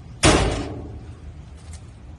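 A metal door slammed shut once on the rear prisoner compartment of a police pickup truck: a sharp bang about a quarter second in that dies away within half a second.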